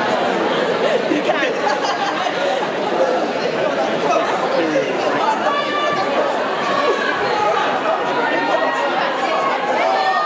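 Crowd of spectators chattering continuously, with louder individual voices calling out now and then.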